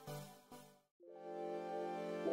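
Background music: a pulsing loop fades out, drops to a brief silence, and a different track of sustained, held chords begins about a second in.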